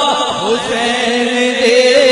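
A man's voice chanting a naat, drawing out long held notes that waver in pitch rather than singing clear words.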